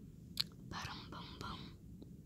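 A sharp click, then about a second of whispering, in two short bursts. A low, steady thunderstorm rumble runs underneath.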